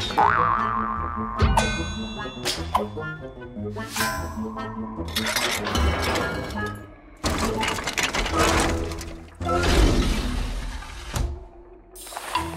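Cartoon sound effects over background music: a springy boing with knocks and thuds, then several long whooshing noises, as of heavy blades swinging.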